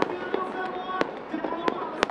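Fireworks going off: a few sharp bangs spaced roughly a second apart over steady background noise.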